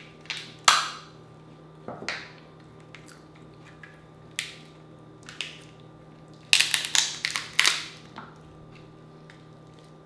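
King crab leg shell being snipped with kitchen scissors and broken open by hand: a run of sharp cracks and crunches, with the loudest cluster coming about six and a half to eight seconds in.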